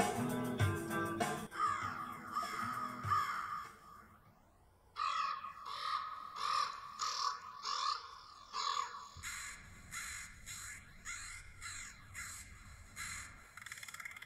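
Guitar music ending in the first few seconds, then, after a short lull, a run of harsh corvid caws, about two a second, which go on to the end over a low rumble.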